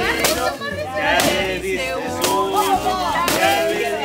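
A stick whacking a hanging piñata four times, roughly once a second, with voices and music behind.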